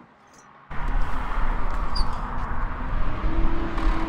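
Loud, steady low rumble of outdoor background noise that starts suddenly under a second in, with a short steady hum near the end.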